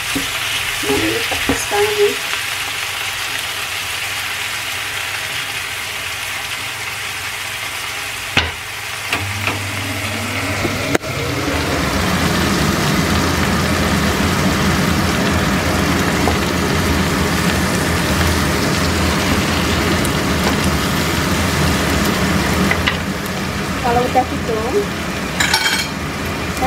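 Grouper frying in oil in a non-stick pan with chopped tomatoes, shallots, garlic and chilli, sizzling steadily while a spatula stirs the pan at first. The sizzle grows louder partway through.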